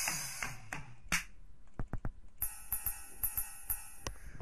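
Recorded drum-kit samples from a simple drum-pad app, each set off by a mouse click: a few single drum hits, a tom among them, in the first second, then a few short sharp hits near two seconds. In the last second and a half a ride cymbal is struck over and over, several times a second, ringing on between strikes.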